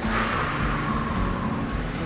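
A person's long breathy exhale that fades out over about two seconds, after hard cardio exercise.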